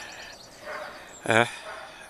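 Quiet outdoor garden ambience with faint high bird chirps early on, broken by a man's short hesitant 'uh' about a second in.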